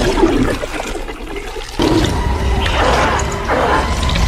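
Film sound effect of an alien symbiote oozing into a human body: a wet, gushing, gurgling rush. It dips about half a second in and comes back suddenly just before the two-second mark.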